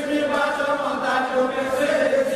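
Voices singing a chant in long, held notes.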